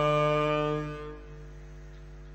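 A chanting voice holds the last note of a line of gurbani, then fades out about a second in, leaving a faint steady held tone.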